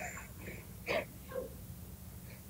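Faint breathy chuckles and exhalations as laughter trails off, the clearest about a second in, over a low steady recording hum.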